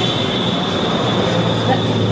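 A steady, high-pitched whine or squeal over a low hum and street noise.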